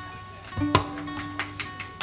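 A single note plucked on a stringed instrument about three quarters of a second in, left ringing quietly, with faint held tones from other strings around it.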